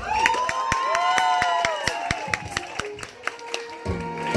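Dance music cuts off, and a small audience claps and cheers, with scattered, uneven claps and several voices calling out in rising and falling whoops.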